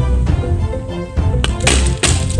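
Background music with a steady bass beat. Near the end comes a sharp crack and then a rushing hiss as a lump of sodium metal explodes in water.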